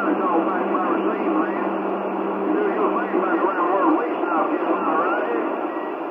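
Weak, unintelligible voice coming through a CB radio's speaker, buried in static and band noise, typical of a distant skip signal. A low steady tone sits under it and stops about halfway.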